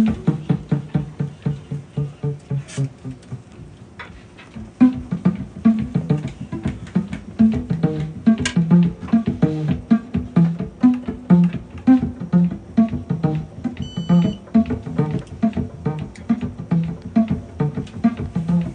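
Live jazz trio playing: plucked double bass notes carrying a steady pulse under archtop electric guitar and drums. The music drops to a softer passage about two seconds in and comes back up at about five seconds.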